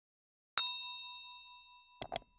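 A single bell-like ding sound effect, struck once about half a second in and ringing on as it slowly fades away.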